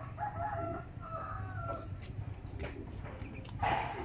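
A rooster crowing once, one long call lasting most of the first two seconds, with a short, louder sound near the end, over a steady low rumble.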